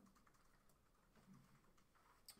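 Near silence: room tone with a few faint laptop key clicks as a slide is advanced.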